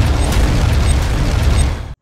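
Cinematic logo-reveal sound effect: a loud, dense burst with a deep low rumble and faint high crackles, fading a little and then cutting off abruptly near the end.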